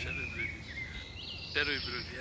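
A bird whistling: long thin held notes, the second one sliding up higher about a second in.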